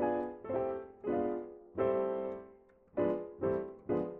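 Yamaha digital piano playing two-handed block chords, sixth and diminished chords from the diminished sixth scale, about seven struck one after another with a short pause in the middle, each left to ring briefly.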